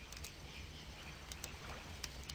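Small campfire crackling softly, with a few brief sharp pops over a low, steady background noise.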